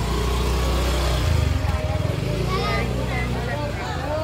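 An engine running close by, a little louder about a second in, fading out shortly before the end.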